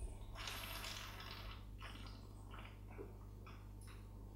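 Faint mouth and breath sounds of a person tasting grappa. A long breathy draw or exhale comes about half a second in, followed by several short breaths and mouth smacks.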